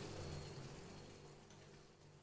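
Faint simmering of chicken curry in a pan on the stove, slowly fading away.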